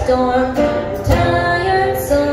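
A girl singing held notes live over a strummed acoustic guitar, with a fresh strum about a second in.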